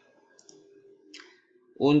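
Two faint, sharp computer mouse clicks, about half a second and a second in, over a faint low hum.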